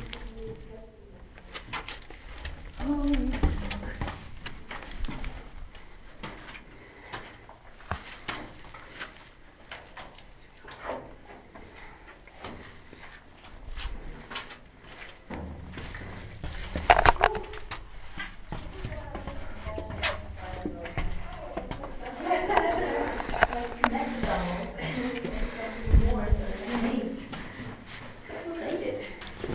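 Indistinct voices of people in narrow stone tunnels, with footsteps and scattered clicks and knocks. The voices grow louder near the end.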